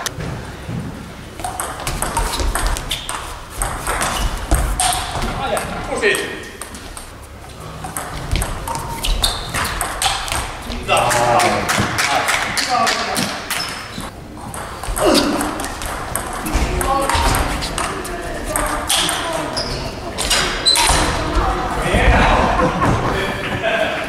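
Table tennis balls clicking off bats and tables in irregular rallies, with voices talking in the background.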